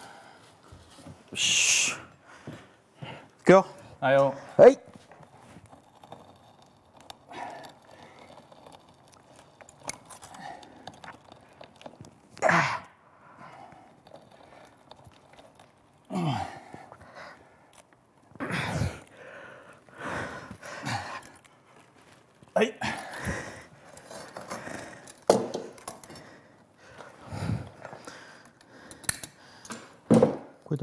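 Two men straining while bending a thick pine trunk with a metal bar: short effortful breaths, sighs and grunts with a few brief vocal sounds, in scattered bursts with pauses between.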